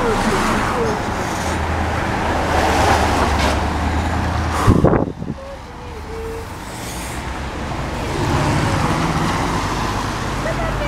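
Cars driving past on a street: engine hum and tyre noise that swell and fade, with a sudden loud burst of noise just before halfway.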